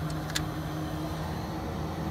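Rooftop air-conditioning equipment running with a steady low hum, with a single click about a third of a second in.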